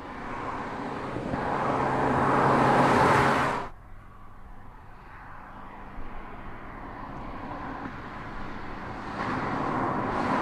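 Mazda3 1.6-litre turbodiesel on the move: its engine and road noise grow louder for about three and a half seconds, then cut off suddenly. A quieter steady running sound follows and swells again near the end.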